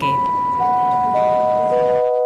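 Airport public-address chime: four steady notes stepping down in pitch, about half a second apart, each ringing on under the next.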